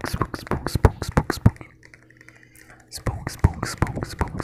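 Close-miked ASMR mouth sounds: quick clicks and pops from the lips and tongue, about six a second, in two runs with a pause of about a second and a half in the middle.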